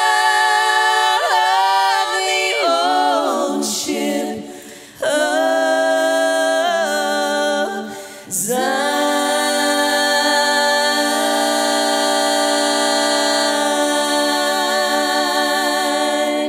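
Four women singing a gospel song a cappella in close harmony, through microphones, with no instruments. The closing phrases end on one long held chord, about seven seconds long, that starts about halfway through.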